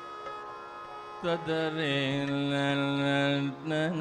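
Carnatic classical music: a steady drone, then about a second in a male voice enters and holds one long steady note. It breaks briefly near the end and comes back with a wavering, ornamented pitch.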